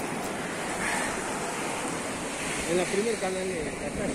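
Sea surf washing onto a beach: a steady, even rush of breaking waves.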